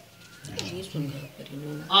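Low, soft murmured voice sounds, then a short spoken 'haan' near the end.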